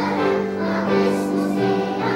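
A choir of second-grade children singing together, holding long notes that move from pitch to pitch.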